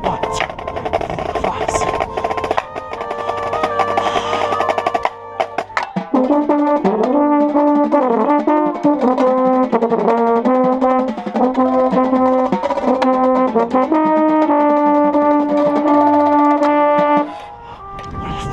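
Drum corps brass and percussion playing: held brass chords over drums and wood-block patterns, then about six seconds in the euphonium right at the microphone comes in loud with the brass melody. The brass cuts off together about a second before the end.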